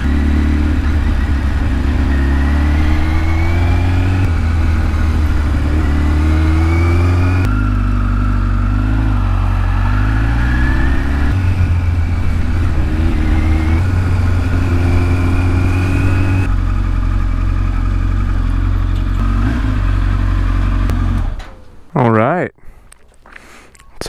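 Kawasaki ZX-10R inline-four engine heard from the rider's seat, its revs rising and falling again and again as it pulls away and eases off at street speeds. Near the end the engine sound drops away sharply.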